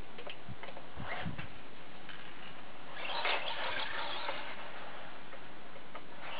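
Small radio-controlled monster truck's electric motor and gearing whirring in short bursts as it drives through deep snow, the longest burst about three seconds in. A few light clicks come in the first second and a half.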